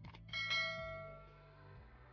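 A bell-like chime struck once, ringing out and fading over about a second, over background music with a steady low bass.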